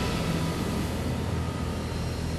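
Closing sound of a TV programme's intro theme: a sustained, noisy whooshing swell with a low hum underneath, slowly fading.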